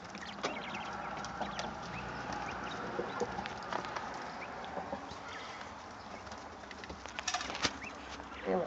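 Quail in a shavings-bedded pen making faint, scattered soft chirps and clucks, with a few small clicks.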